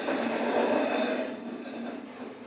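A toy spinning top whirring as it spins and wanders across bare wooden floorboards: a steady rough rolling noise that fades toward the end.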